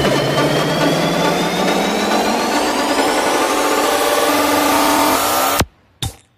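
Psytrance track in a build-up: the bass drops out and a rising synth sweep climbs over dense, noisy layers. The music then cuts off suddenly near the end into a brief silence.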